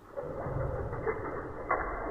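Water from a tap splashing onto a smartphone held in a hand, heard as slow-motion playback: the sound is slowed down, becoming a low, steady rushing rumble with no treble.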